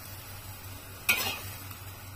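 Rice vermicelli sizzling in a steel wok, with one sharp metallic clank of the spatula against the wok about a second in.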